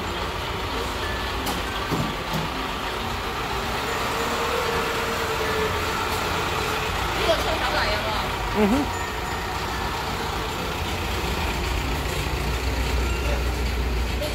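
A steady low rumble with indistinct voices in the background, and a couple of brief louder sounds midway.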